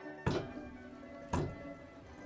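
Coffee beans being pounded in a stone dibek mortar with a heavy-headed wooden pestle: two thuds about a second apart, the traditional way of making tucana (pounded) Bosnian coffee.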